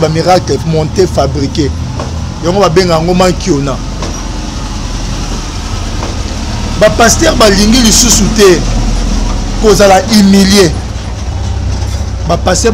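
A motor vehicle running nearby: a steady low engine rumble that comes up about four seconds in and carries on under men's voices.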